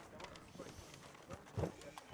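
Indistinct chatter of many people talking at once in small groups across a large room, with scattered faint knocks and one louder thump about one and a half seconds in.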